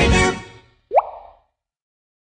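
A song's closing notes fade out, and about a second in a single short cartoon-style plop sound effect follows, rising quickly in pitch.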